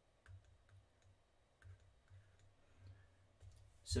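A handful of faint, irregular clicks from a stylus tapping and writing on a tablet screen, over a low room hum.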